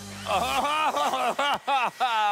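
A man laughing: a quick run of short 'ha's, about six a second, that breaks up near the end.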